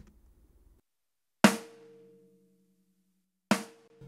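Two snare drum hits about two seconds apart. Each is a sharp crack with a ringing tone that dies away. The snare runs through a compressor set to a longer attack time, so more of each hit's uncompressed attack comes through.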